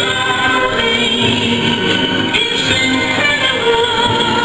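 Music with singing voices.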